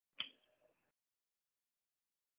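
A single sharp click with a short ringing tail, surrounded by dead silence.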